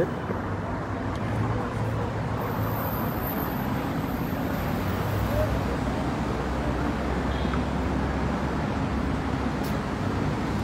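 Steady road traffic noise from a city street, with a low engine hum from passing vehicles that grows somewhat stronger in the second half.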